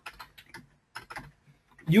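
Computer keyboard keys being typed: a few faint, scattered clicks over about a second and a half.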